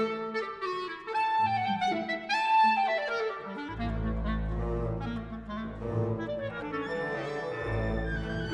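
Solo clarinet playing quick falling and rising runs with a symphony orchestra. About four seconds in, the orchestra's low instruments come in with a full, sustained sound beneath it.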